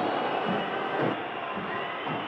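Stadium crowd noise: a steady, even hum of many voices at a football match, with no single shout standing out.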